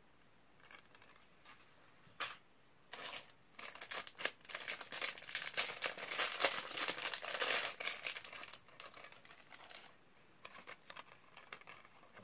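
A plastic shopping bag crinkling and rustling as it is rummaged through. It starts about three seconds in, is loudest in the middle and dies away a few seconds before the end.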